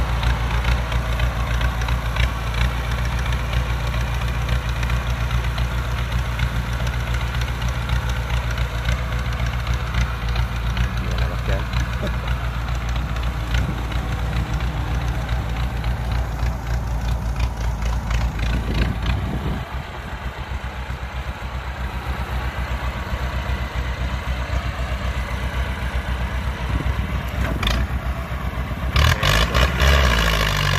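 Massey Ferguson 185 tractor's four-cylinder Perkins diesel running steadily under load as it pulls a trailer of rice sacks through mud up a bank, with its mismatched front-drive axle giving little help. The engine sound drops a little about two-thirds of the way through.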